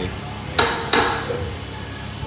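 Two sharp metallic clanks about a third of a second apart, just over half a second in: the weight plates on a heavily loaded barbell, 188 kg, knocking on the bar as the lifter braces with it on his back.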